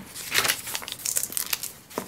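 Paper rustling and crinkling in short, irregular strokes as a small notebook and loose sheets of paper are handled.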